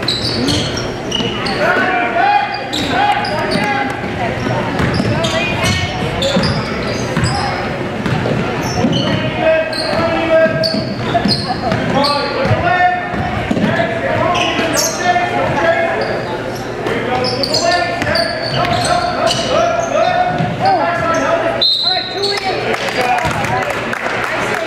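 Basketball game in a gymnasium: the ball bouncing, sneakers squeaking on the hardwood floor, and players and spectators calling out, all echoing in the hall. A steady high whistle, like a referee's whistle, sounds near the end.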